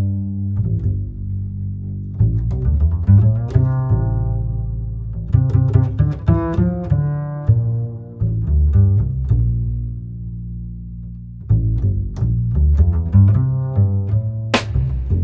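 Background music: an instrumental of plucked low string notes in a quick run, with the notes thinning out to a single held low note for a second or two around ten seconds in.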